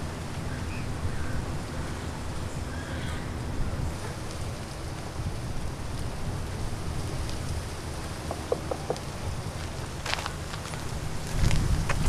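Outdoor ambience dominated by wind rumbling on the microphone, with a few faint, short high chirps; the low rumble swells louder near the end.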